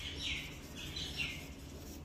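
Marker squeaking against a whiteboard in a few short strokes as a word is written by hand.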